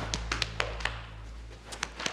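Hands patting and slapping on backs as men hug: about eight sharp, irregular pats, with a pause in the middle, over a low steady hum.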